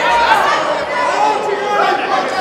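Spectators chattering in a large hall, several voices overlapping.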